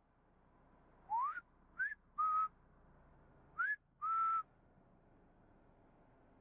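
A person whistling five short notes from about a second in: quick upward slides alternating with brief level notes, the first slide the longest and the last level note the longest held.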